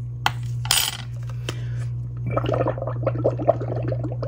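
A metal spoon clinking against a cup of soapy water a few times, then a straw blowing bubbles into the dish-soap water: a rapid, dense burbling from about two seconds in.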